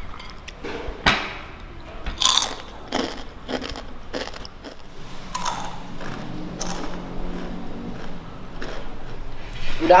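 Crunchy spicy snack being chewed close to the microphone, a run of irregular crunches.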